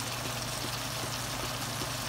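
Gourd curry simmering in a pan: a steady bubbling hiss, with a steady low hum underneath.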